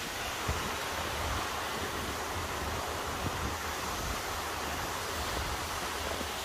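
Mountain stream rushing steadily over rocks, a constant even rush of water with a low rumble beneath.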